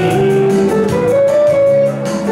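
Yamaha keyboard playing a song interlude over its accompaniment: a melody of held notes stepping upward, with a brief dip just before the end.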